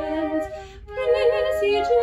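Hymn played by a soprano voice and three flutes in parts, sustained chords moving from note to note. The parts stop briefly for a breath between phrases about half a second in and start again about a second in.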